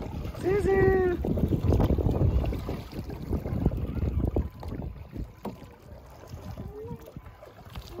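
Kayak paddling on a lake: paddle splashes and moving water over wind rumble on the microphone, loudest in the first half and fading later. A short voice call about half a second in.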